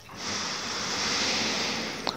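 One long, steady breath close to a headset microphone, part of slow meditative breathing; it swells just after the start and fades away near the end.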